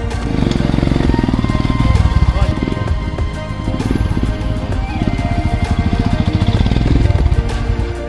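Background music over the engines of single-cylinder adventure motorcycles running close by, their low pulsing loudest around two seconds and seven seconds in.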